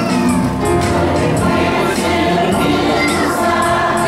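Church choir singing, with a steady beat of about two strokes a second.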